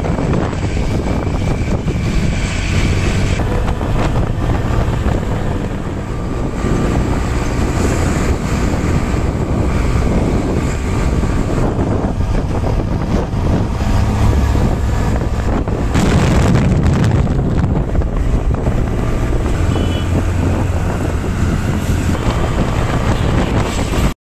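Wind buffeting the microphone on a moving vehicle, steady and loud, over road and traffic noise.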